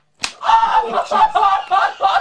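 A single sharp slap of a leather belt striking a person's backside, about a fifth of a second in, followed by men's voices.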